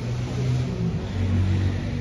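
A motor vehicle's engine running close by, a steady low hum that drops slightly in pitch a little over a second in.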